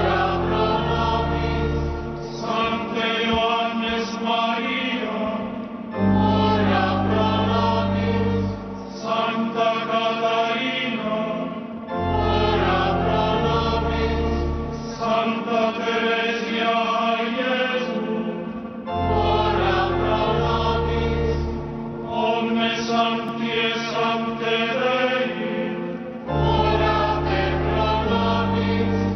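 A choir and the congregation singing a liturgical chant with sustained low organ notes underneath, in repeated phrases of about six seconds, each starting loud and easing off.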